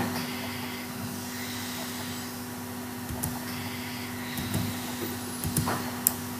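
Steady low hum and hiss of background noise, with a few faint clicks.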